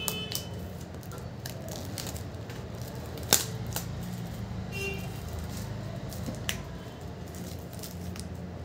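Clear plastic shrink-wrap crackling and crinkling as it is picked at and peeled off a cardboard box, with a sharp snap about three seconds in and a smaller one later.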